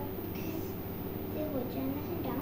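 A faint voice murmuring over a steady background hum, with a brief hiss about half a second in.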